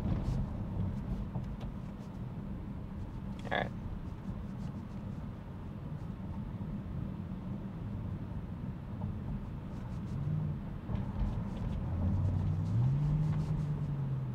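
Tesla cabin road noise while driving on city streets: a steady low rumble of tyres and road, with a low hum that rises in pitch and holds near the end.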